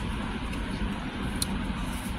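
Steady low vehicle rumble heard inside a car cabin, with a single faint click about one and a half seconds in.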